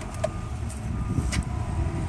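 Light clicks and rustles of flexible plastic chlorinator tubing being handled and routed along PVC pool pipe, over a steady low rumble.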